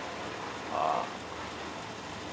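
A steady hiss of outdoor background noise, with one short voiced hum from the man, like a hesitation, about a second in.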